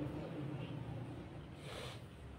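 A pause in a man's speech into a close microphone: the last of his voice dies away in the hall at the start, then faint room noise and a short breath drawn in near the end.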